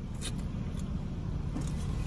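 Car engine idling, a low steady rumble heard from inside the cabin, with a couple of faint soft clicks.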